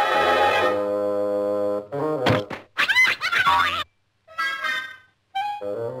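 Cartoon orchestral score: a held chord, then a sliding pitch and a thunk between two and three seconds in, the sound effect of a wooden club striking, followed by warbling glides. After two short breaks the music picks up again near the end.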